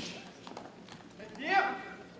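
A short voice calling out about a second and a half in, over a few faint light knocks earlier on, in keeping with footwork on the competition carpet.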